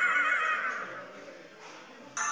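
A wavering, warbling whinny-like tone from the TV's credits soundtrack that fades away over about a second and a half, leaving a low lull.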